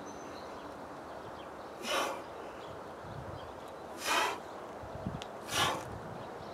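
A man breathing out sharply and forcefully three times, about two seconds apart, in time with his reps of a two-kettlebell exercise.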